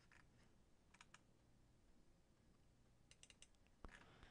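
Near silence: room tone with a few faint clicks at the computer, a pair about a second in and a quick cluster past three seconds, then one soft knock just before the end.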